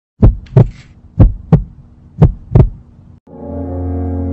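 Six heavy thumps in three evenly spaced pairs, about one pair a second, over a faint low hum.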